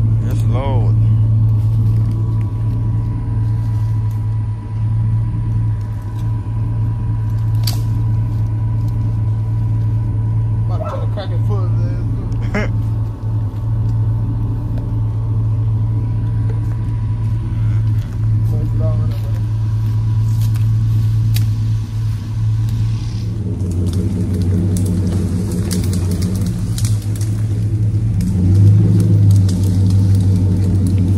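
A truck engine running steadily at a low, even pitch, then growing louder and fuller about three-quarters of the way through as it takes more throttle.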